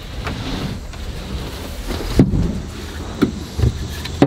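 Door of a small wooden outhouse being opened, followed by a few short knocks and bumps of handling.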